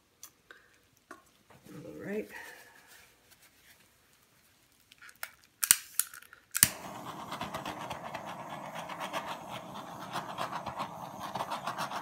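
A handheld butane torch is clicked on with a few sharp igniter clicks about six seconds in. Its flame then hisses steadily for the rest of the time as it is passed over wet acrylic paint to pop silicone cells.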